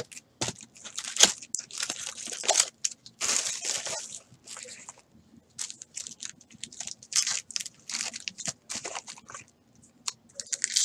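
Sealed baseball card packs crinkling and rustling as they are pulled out of a cardboard hobby box and stacked by hand. The crackles come irregularly, with a brief lull about halfway through.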